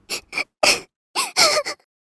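A cartoon rabbit's voice sobbing: a few short, breathy sniffling gasps, then a longer whimpering sob about halfway through.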